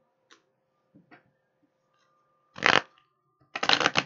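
Tarot cards handled on a wooden tabletop: a few light taps as cards are laid down, a short flutter of cards about two and a half seconds in, then a fast riffle shuffle of the deck near the end.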